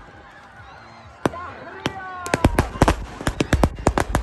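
Firecrackers going off: sharp cracks coming fast and irregularly from about a second in, after a quieter first second. Excited shouts and whoops rise over the cracks.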